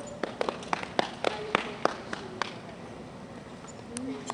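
A few spectators clapping unevenly for about two and a half seconds, the claps sharp and scattered.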